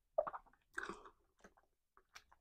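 A person chewing a mouthful of amala with spicy tomato sauce close to a clip-on microphone: a few soft, wet chews at irregular intervals about half a second apart.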